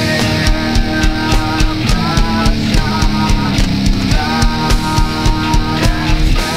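Nu metal recording: drum kit keeping a steady beat under held electric guitar chords.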